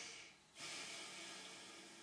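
A long, faint breath that starts about half a second in and slowly fades, heard as a breathy hiss with no voice in it.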